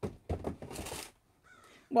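A thump, then about a second of rustling handling noise; a faint short pitched sound follows near the end.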